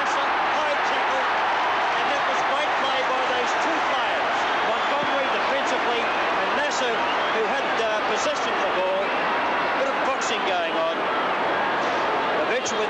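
Large football crowd: many voices shouting and calling at once in a steady, dense hubbub.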